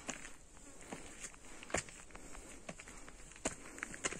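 Footsteps climbing stone steps through dry grass, irregular steps landing about once or twice a second, the loudest a little before the middle. Over them runs a steady high-pitched insect drone.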